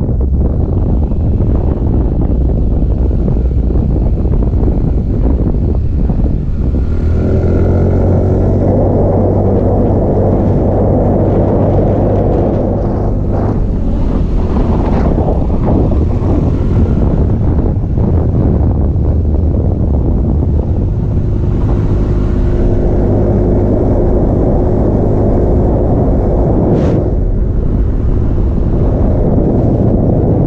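Motorcycle engine running under way on a winding road, with wind rumbling on the microphone. The engine note comes up clearly in two stretches, about a quarter of the way in and again after the middle.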